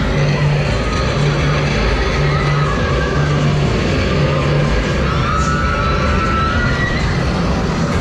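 Loud fairground music with a low bass note repeating about once a second for the first half, over a dense bed of crowd and ride noise. Brief wavering high sounds cut through about two seconds in and again about five seconds in.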